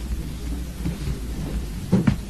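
Low rumbling room noise of a crowded courtroom with faint murmuring, and a sharp knock just before the end.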